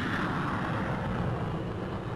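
Jet aircraft flying past: a steady rushing engine noise that swells, then fades away toward the end.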